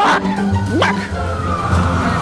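Background music with a single sudden, sharply rising cry a little under a second in: a man's loud imitation of a chicken's 'bock'.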